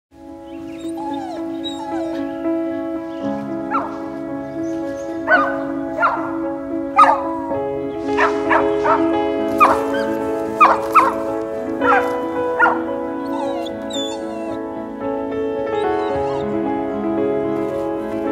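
A small dog barking and yelping about a dozen times, from about four seconds in until about thirteen seconds, over slow music with long held chords.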